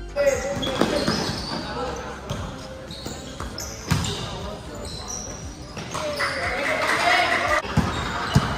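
Basketball game sounds on a hard court: a ball bouncing in repeated knocks, short high sneaker squeaks, and players and spectators shouting, with a louder burst of crowd noise about six seconds in.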